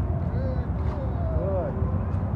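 A man talking quietly to a dog in short, faint phrases over a steady low rumble.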